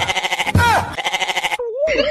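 Goat bleating: a long, quavering, pulsing bleat that drops in pitch twice and breaks off about one and a half seconds in. A thin wavering tone follows near the end.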